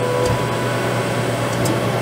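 Steady rush of an inline duct fan pulling air out of a laser engraver enclosure. Over it comes a faint steady whine from the Ortur Laser Master 2 Pro's stepper motors as they drive the laser head back to its home position.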